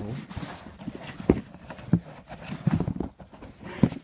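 Handling noise: several short knocks and bumps at uneven spacing, the loudest about a second in and just before the end, as a shoe and the filming phone are moved about.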